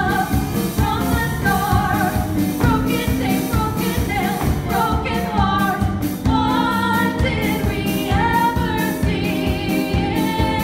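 Two young female voices singing a show-tune duet over instrumental accompaniment with a steady beat.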